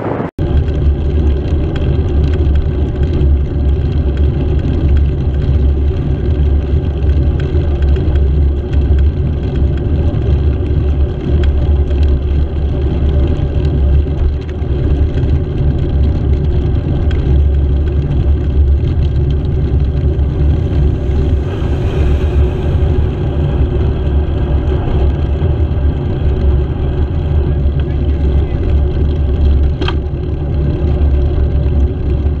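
Steady low drone of riding noise from a moving two-wheeler, with a constant hum and wind on the microphone. An oncoming lorry passes about two-thirds of the way through, and the sound briefly cuts out just after the start.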